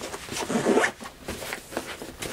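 Zipper on a padded fabric case being pulled along its track in a few short strokes.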